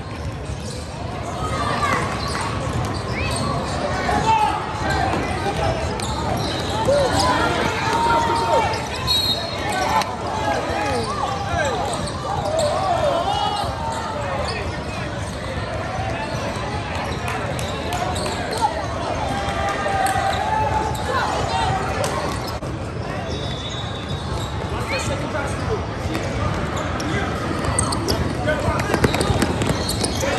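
Many overlapping, indistinct voices of players and spectators calling out during a basketball game, with a basketball bouncing on the court floor.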